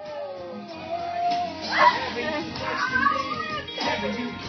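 Thin, muffled phone-recorded room sound: excited voices, with a sharp rising squeal about two seconds in, over faint music.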